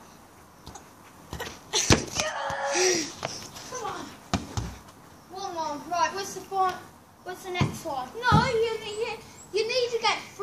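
Children's voices calling out and laughing, with several sharp thuds of a football being struck.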